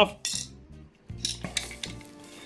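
Old cuckoo clock weight chains clinking and rattling as the bundled chains are handled, in short bursts about half a second in and again in the second half.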